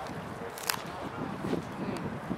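Open-air ambience at a football oval, with faint distant shouts and a sharp click just under a second in.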